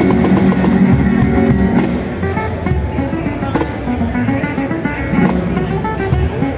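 A live duet of a nylon-string guitar playing flamenco-style and a Gon Bops cajon slapped by hand. The playing is busier and louder for about the first two seconds, then eases off with fewer hits.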